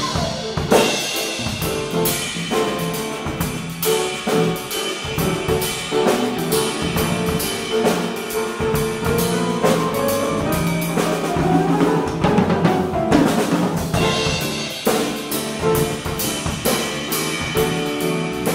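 Live groove jam of a drum kit, grand piano and guitar playing together, with the drums to the fore in a steady beat of kick, snare and cymbal hits.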